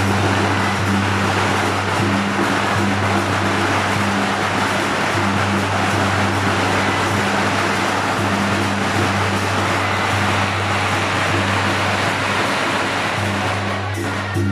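A long string of firecrackers going off without a break, a dense crackle of small bangs, over steady low-pitched music.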